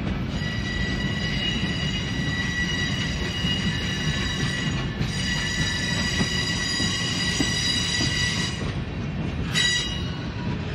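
Intermodal freight train's well cars rolling past with a steady low rumble and a high-pitched steel wheel squeal. The squeal breaks off briefly about halfway through and again for about a second near the end.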